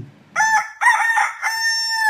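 A rooster crowing once: a cock-a-doodle-doo of a few short notes ending in a long held note.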